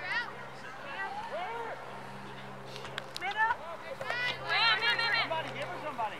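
Unintelligible shouts and calls from players and spectators during a youth soccer match, several voices at a distance. They are loudest from about four seconds in, over a steady low hum.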